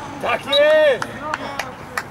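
A man's loud shout on a football pitch, held for about half a second near the middle, with shorter shouted calls and a few sharp knocks around it.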